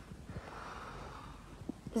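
A child's faint audible breath, a soft exhale lasting about a second, with a few small mouth or handling clicks, in a pause between sentences.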